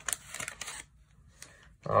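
The wrapper of a 1990 Fleer basketball card pack crinkling as it is peeled open and the cards are slid out, lasting under a second.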